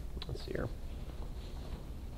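A brief quiet whispered voice sound, falling in pitch, lasting about half a second near the start, over a steady low room hum.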